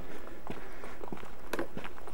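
Footsteps of a person walking at a steady pace, a series of short, sharp steps about two or three a second.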